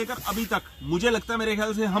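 Speech only: a man talking in Hindi.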